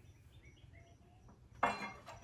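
Faint metallic clinks and squeaks as a magnesium anode rod slides down through the top port into the water heater tank, followed by a short spoken word near the end.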